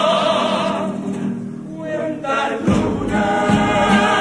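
Carnival comparsa choir singing in harmony with instrumental accompaniment. About two and a half seconds in, a deeper, fuller accompaniment with low beats comes in under the voices.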